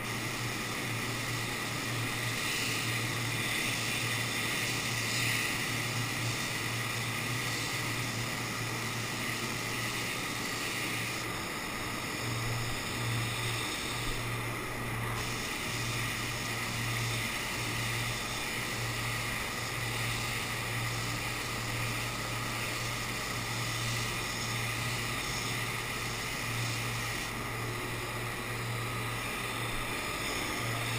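Automotive paint spray gun hissing with compressed air as it sprays the car body, over a steady low hum. The hiss eases off briefly twice, around the middle and near the end, as the gun is let off between passes.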